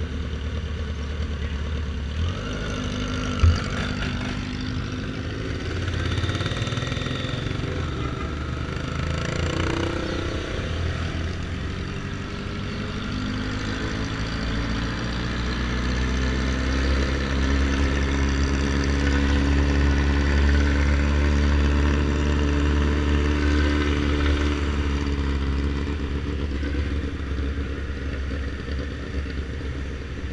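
BMW F800R's parallel-twin engine running in city traffic, near idle at first, then rising in pitch about halfway through as the bike picks up speed, and easing off near the end. A single sharp click about three and a half seconds in.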